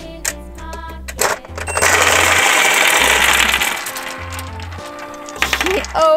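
A click as the toy microwave's door is opened, then a loud clattering rush of hard gumballs tumbling out and scattering across a tabletop for about two seconds, over cheerful background music.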